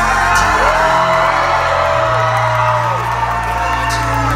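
Live concert music played loud through a venue's sound system, with a deep bass line and a melody line that arches up and falls away, recorded from inside the crowd; the audience whoops over it.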